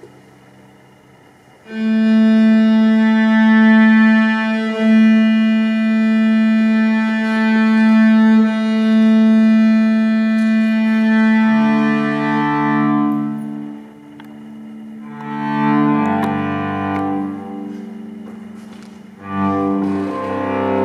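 Two cellos playing a duet. After a short hush, a long held note sets in about two seconds in and is sustained for several seconds. A lower part joins around the middle, and the music fades and swells again before picking up near the end.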